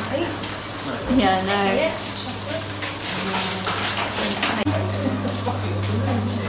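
Background chatter of several people in a room, over a steady low hum.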